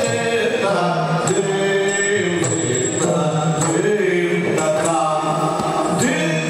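Yakshagana music: a singer holds a sustained, chant-like melodic line, with drum strokes every half second to a second and the steady ring of small hand cymbals.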